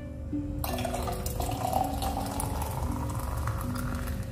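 Carbonated soda poured from a can into a glass jar of grape juice and ice, starting about half a second in and fizzing steadily as the jar fills with foam.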